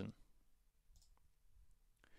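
Near silence: room tone, with a faint click or two about a second in, typical of a computer mouse button being clicked.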